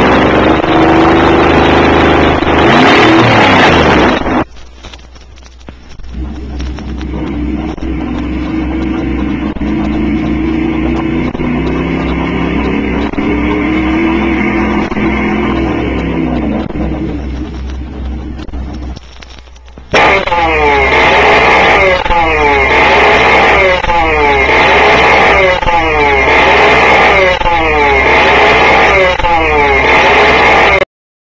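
Three reference engines in turn: a V8 car engine on open exhaust, loud and revving, cut off about four seconds in; then a similar V8 through its factory mufflers, quieter, revving up and down; then from about twenty seconds a two-stroke single-cylinder kart engine, loud and sharp, its pitch swinging up and down about once a second.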